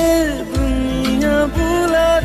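Bollywood film song playing: a melody line holding long, gently wavering notes over a low beat about once a second.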